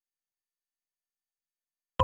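Dead silence, with music cutting in abruptly at the very end.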